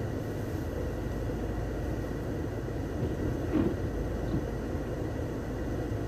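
Skoda Octavia's 2.0 TSI (CZPB) turbocharged four-cylinder petrol engine idling steadily while it warms up after a cold start, coolant at about 50 °C. A brief small noise comes about halfway through.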